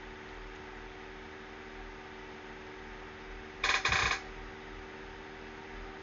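Steady low room hum with a few fixed tones. A little past halfway there is one brief, bright clatter-like sound lasting about half a second.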